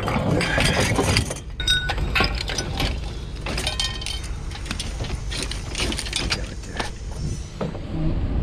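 Ceiling fan parts clinking and knocking as they are shoved and slid into a pickup truck's bed: a run of short clinks and clatters.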